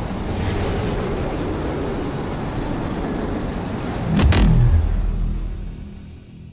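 Cartoon sound effects: a steady, noisy energy-beam blast, then about four seconds in two sharp cracks and a loud, low boom of an explosion that fades away near the end.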